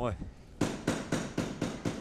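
A quick, even run of about nine sharp knocks, some seven a second, starting about half a second in: the timekeeper's ten-second warning, signalling that the boxing round is in its last seconds.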